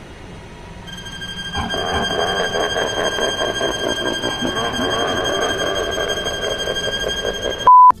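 A steady high-pitched whine over a rough mid-range noise, cut off just before the end by a short, loud single-tone censor bleep.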